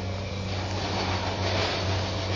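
Steady low drone of heavy machinery from building and demolition work: a constant engine hum with a rushing noise over it.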